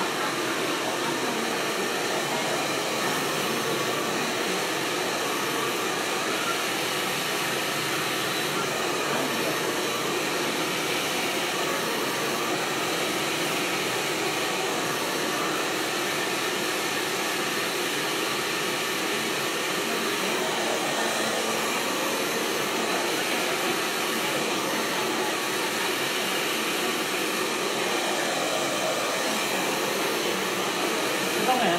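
Handheld hair dryer running steadily at one speed, blowing on short hair during a blow-dry.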